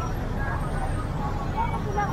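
Outdoor street background: a steady low rumble with faint voices of people around.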